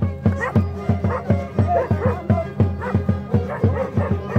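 Andean carnival band music: a drum keeps a steady beat of about three strokes a second under strummed guitars and a melody of voices or instruments.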